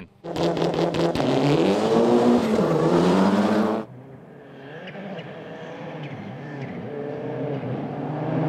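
Rally car engine at full throttle on a gravel stage, its revs rising and falling through the gears, with a spray of gravel noise; this sound cuts off abruptly about four seconds in. A second rally car's engine is then heard in the distance, growing steadily louder as it approaches.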